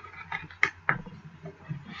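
Cardstock being folded along its score lines and creased with a bone folder: a few short rustles and taps of card in the first second, then quieter handling.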